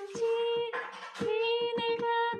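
A woman singing a Catholic hymn in a high, sustained voice, with digital piano chords struck steadily under each note.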